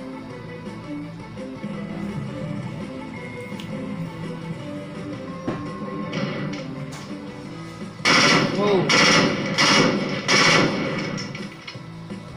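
Background music, then about eight seconds in four short, loud bursts of automatic fire from an AM-17 compact 5.45 mm assault rifle.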